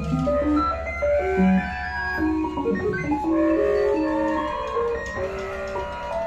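Live jazz ensemble of horns, reeds and double bass playing several stepping melodic lines together. A low steady drone under them drops away about halfway through.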